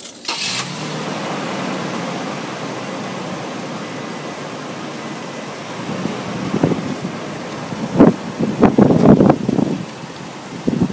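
Pickup truck engine idling steadily, left running to warm up. A run of loud knocks and thumps about six and a half to nine and a half seconds in, loudest near eight seconds.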